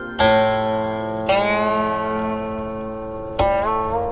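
Chinese zither music: three plucked notes, each left to ring and fade, the last bent upward in pitch shortly after it is struck.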